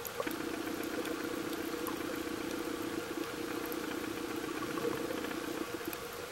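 Underwater sound picked up by a camera in its housing: a steady, finely pulsing low drone runs through nearly the whole stretch over a hiss, with scattered faint clicks.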